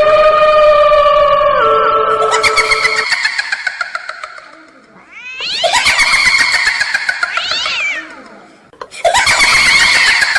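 Eerie horror sound effect of long, wavering, cat-like wails that slide and bend in pitch. They come in three swells, the second rising sharply near its end.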